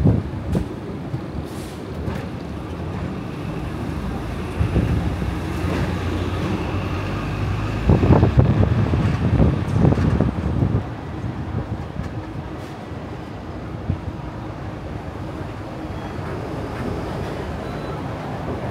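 Hong Kong double-decker electric tram running along its rails, heard from the upper deck: a steady rumble and rattle with wind on the microphone. The rumble swells louder for a moment about a quarter of the way in, and again for a few seconds around the middle.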